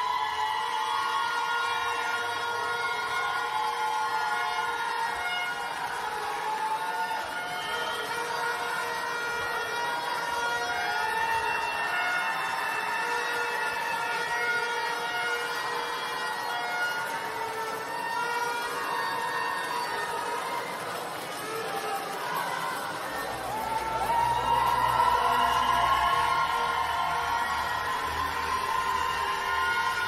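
Music played over an ice arena's sound system: long held, layered tones that slide slowly in pitch, swelling louder about 24 seconds in.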